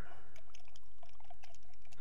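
A glass of lemonade being stirred, with quick, irregular clicks and clinks against the glass and a little liquid sound.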